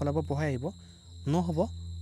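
A man's voice speaking two short phrases, over a steady high-pitched whine and a low hum that run underneath throughout.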